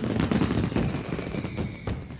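Dense crackling noise made of many small pops, steady throughout and cutting off just after the end.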